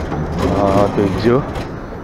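A man's voice talking, words not made out, over the background noise of a busy indoor hall.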